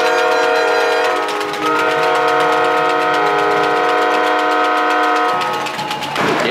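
Arena goal horn sounding for a goal: a loud, steady multi-note horn chord in two long blasts, with a short break about a second and a half in, dying away near the end.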